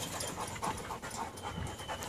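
Dog panting, soft and irregular.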